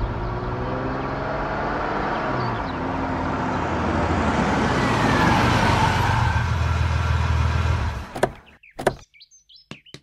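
Car driving up and stopping with its engine running, with a steady low hum that cuts off suddenly about eight seconds in. Two sharp clicks of the car doors opening follow, then a few faint taps.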